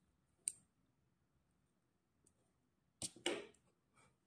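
Plastic knitting needles working fabric-strip yarn: a faint click about half a second in and a brief, louder scraping rustle near the end.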